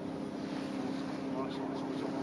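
A steady low motor drone, like an engine running at an even speed, with faint voices in the background.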